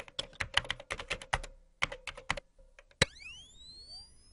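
Logo-animation sound effects: a quick, irregular run of keyboard-like typing clicks over a faint steady tone, then about three seconds in a sharp hit followed by several tones sweeping upward in pitch.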